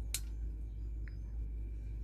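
Quiet room tone: a steady low hum, with a single short click just after the start and a faint tick about a second in.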